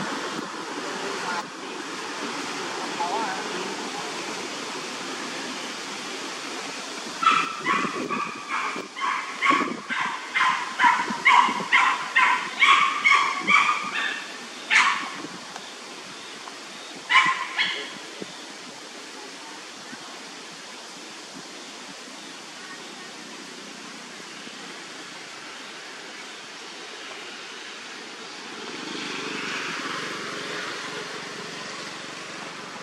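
An animal calling: a run of short, high-pitched calls, about two a second, starts about seven seconds in and goes on for some eight seconds. A few more follow a couple of seconds later, over a steady outdoor noise.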